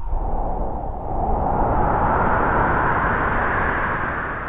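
A rushing, wind-like whoosh sound effect, steady and swelling a little louder about a second in, opening a promotional video before its music starts.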